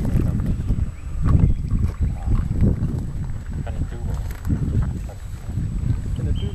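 Wind buffeting the camera microphone in uneven gusts, strongest about a second and a half in, with faint voices underneath.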